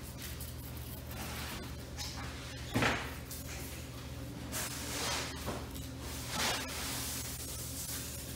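A knife sawing down the back of a red drum, rasping through the scales and skin in several short scraping strokes, the loudest about three seconds in. A steady low hum runs underneath.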